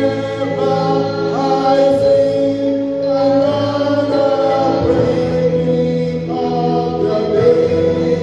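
Gospel singing: a man's voice through a microphone and PA, leading a hymn in long held notes, with other voices joining in.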